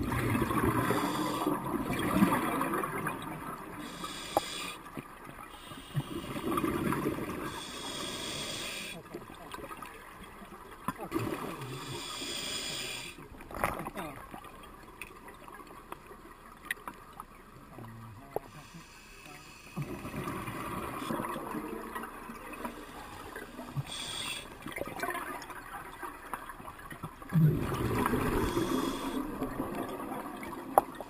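Scuba diver breathing through a regulator underwater: a hiss on each inhalation and a gurgling burst of exhaled bubbles, repeating about every five to six seconds.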